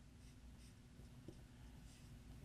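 Faint strokes of a dry-erase marker writing on a whiteboard, over quiet room tone.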